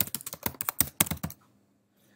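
Quick keystrokes on a computer keyboard, a rapid run of about a dozen clicks typing a short terminal command, stopping about a second and a half in.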